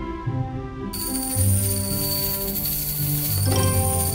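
Betsoft Ogre Empire online slot game audio: fantasy-style game music with held notes. A bright, hissing sparkle effect comes in about a second in and keeps going.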